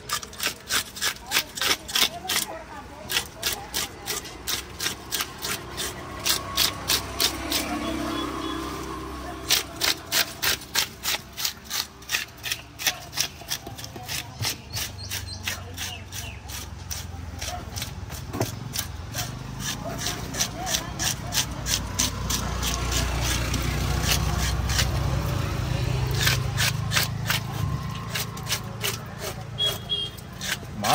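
Fish scales being scraped off a large fish with a cleaver blade: quick rasping strokes, about two to three a second, going on in runs with short pauses between.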